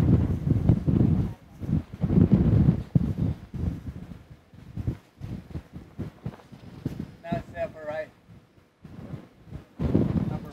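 Wind buffeting the microphone in uneven gusts, strongest in the first few seconds and dying down after that. A faint voice comes in briefly near the end.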